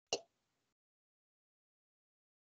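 A single short pop just after the start, then dead silence.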